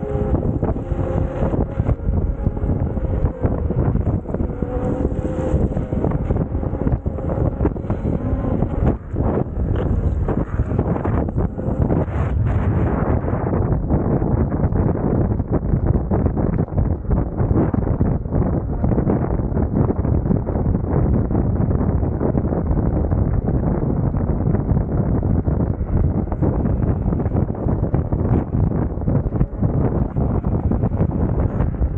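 Heavy wind buffeting the microphone of a camera carried along at riding speed on an electric unicycle, a continuous rumbling rush. A faint steady whine sits under it and fades out within the first few seconds.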